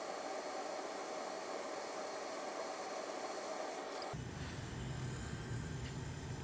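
Hot air rework station blowing a steady hiss of air, which cuts off about four seconds in, leaving a low room hum.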